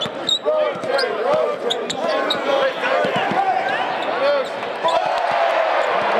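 Basketball shoes squeaking sharply and repeatedly on a hardwood court as players cut and stop, with a basketball bouncing on the floor.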